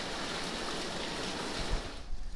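Water running and pouring steadily in a stone tunnel, a continuous rushing hiss.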